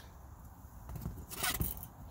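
A few light knocks and clatter starting about a second in, from a removed chrome plastic shifter trim bezel and a butter knife being handled and set down, over faint rustle.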